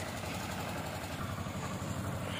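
Engine of a bitumen sprayer truck running steadily at low speed while it sprays tack coat.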